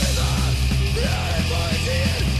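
Hardcore punk band playing, with yelled vocals over the full band.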